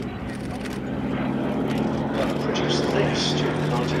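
Westland Lysander's nine-cylinder radial engine and propeller droning as the aircraft flies towards the listener, growing steadily louder with its pitch rising slightly.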